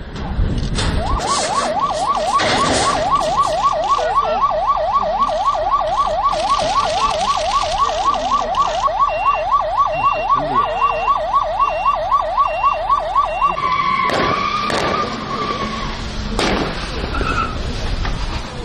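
Police siren in its fast yelp mode, its pitch rising and falling about four times a second for some twelve seconds, then holding one steady note briefly before stopping.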